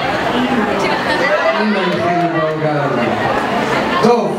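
Several people talking at once, a babble of overlapping voices in a large room.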